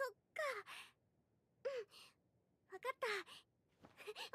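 Faint, short breathy voice sounds: four or five brief sighs or murmurs with falling pitch, separated by silences.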